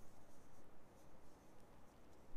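Faint rustling and scraping of a metal crochet hook drawing wool yarn through stitches while working single crochet.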